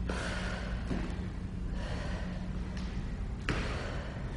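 A person breathing hard in repeated puffs while doing lunges, with a few sharp thumps of feet on the floor, over a steady low hum.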